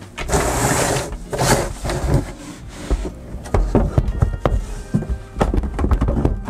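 Handling packing foam and batteries in a wooden tray: scraping, rustling noise in the first second and a half, then a few dull knocks and clicks as things are pushed into place.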